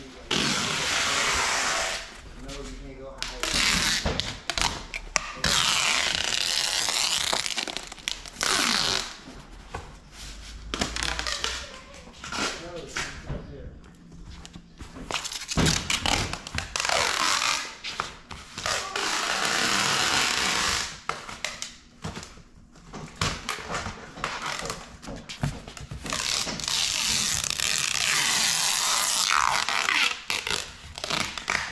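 Clear packing tape being pulled off the roll and pressed onto cardboard, in several long rasping pulls of a few seconds each with short pauses between.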